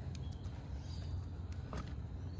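A few light plastic clicks and knocks as a NutriBullet blender cup is handled on a table and gripped to twist off its blade base, over a steady low rumble.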